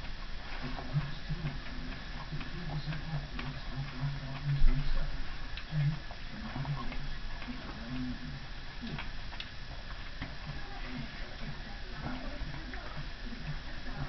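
A man chewing a chilli pepper close to the microphone, with irregular small mouth clicks and smacks. One louder low bump comes about four and a half seconds in.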